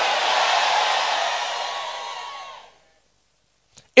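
Church congregation cheering and shouting in response to the preacher's declaration, a loud, even noise that fades away about two and a half seconds in.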